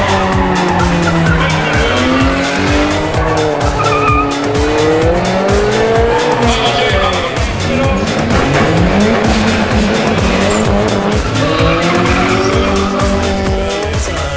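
Racing car engines revving up and down, with tyre squeal, mixed with electronic dance music that has a steady beat.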